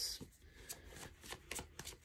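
Tarot cards being handled: faint, scattered light clicks and rustles of card against card.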